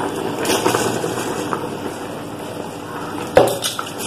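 Parboiled rice being scooped by hand from an aluminium bowl into a large aluminium pot of bubbling biryani gravy, over a steady simmer, with one sharp clink of the bowl against the pot a little over three seconds in.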